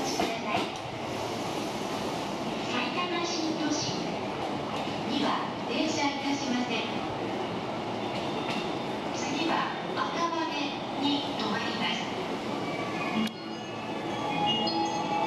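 JR East E233-series electric commuter train running at a station platform, pulling out and another approaching, with station voices over the rail noise.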